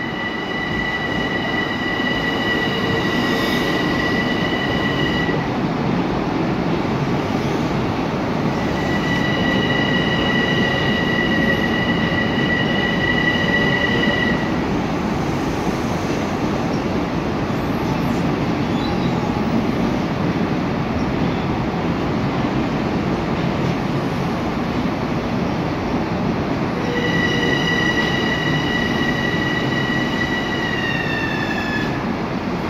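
M7 electric multiple-unit commuter train pulling into an underground platform and slowing, with a steady rumble of wheels on rail. A high-pitched squeal comes and goes three times, the last one falling in pitch near the end as the train slows.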